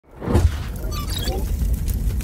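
Edited intro sound effects: a sudden loud burst with a deep rumble about half a second in, then a few rising, glittering glides over the continuing rumble.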